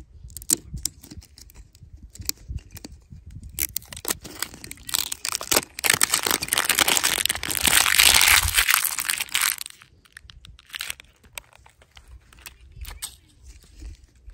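Thin plastic shrink-wrap film torn off a clear plastic capsule and crumpled in the hand: a dense crinkling that is loudest from about five to ten seconds in. Scattered light plastic clicks and rustles before and after it.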